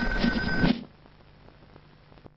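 Worn old film soundtrack: muddy sound under a steady high whine, which cuts off suddenly under a second in. What follows is faint hiss with a few soft clicks.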